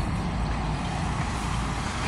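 Steady city traffic noise: a continuous low rumble of passing vehicles with a hiss above it.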